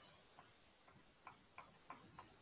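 Near silence with about five faint, light ticks at uneven intervals: a pen-tablet stylus tapping and clicking as handwriting is drawn on screen.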